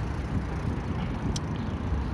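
Steady low rumble of a bicycle ride: wind buffeting the microphone and tyres rolling on asphalt. A single sharp click about one and a half seconds in.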